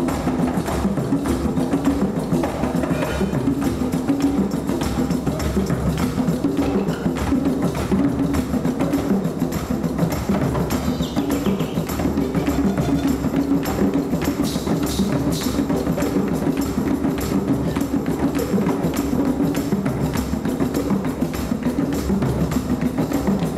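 Marimba and drum band playing live: wooden marimbas play a busy, repeating pattern over hand drums, with a steady rhythm throughout.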